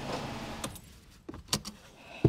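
A car seatbelt being unbuckled: a few light metallic clicks and a jingle of the latch plate about a second and a half in, after a music track's tail fades out.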